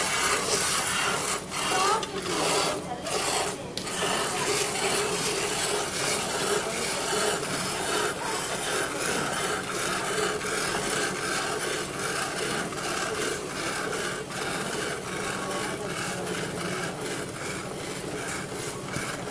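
Jets of milk squirting into a steel pail as a water buffalo is hand-milked: a steady rasping hiss that pulses with each pull on the teats.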